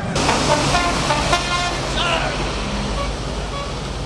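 Several short horn toots over voices and street traffic, loudest in the first two seconds and easing off after.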